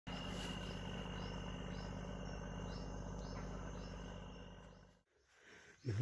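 Insects chirping steadily, with regular short chirps, a thin high steady tone and a low hum underneath. The sound fades out near the end.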